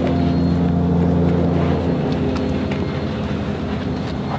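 A steady, low engine hum that drops away about two seconds in, leaving a few light clicks.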